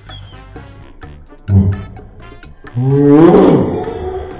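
A person's voice: a short low grunt about a second and a half in, then a loud, drawn-out vocal outburst lasting about a second near the end.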